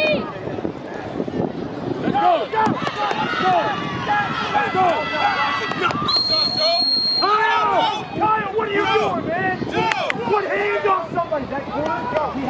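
Spectators and coaches shouting and cheering over a football play. About halfway through, a referee's whistle sounds one steady shrill blast of a little over a second, blowing the play dead after a tackle.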